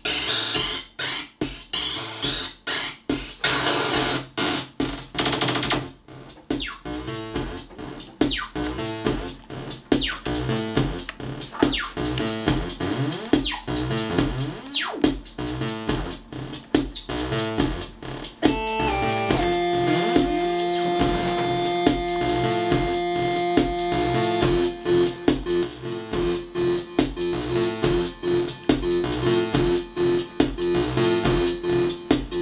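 A Korg Monotribe analog synthesizer runs a sequenced pattern of drum hits and synth notes while its knobs are turned, sweeping the synth pitch up and down. Partway through, a steady held synth tone comes in under the beat.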